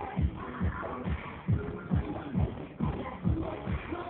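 Dance music for a cheerdance routine, driven by a heavy bass drum beat at about two beats a second.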